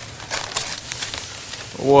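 Rolled newspaper rustling and crinkling as cut paper tubes are pulled up from the center and slide out into tall paper trees, with many small crackles.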